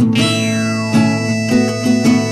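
Instrumental break in a folk-rock song: guitar chords over a steady low note, with a new chord struck about once a second.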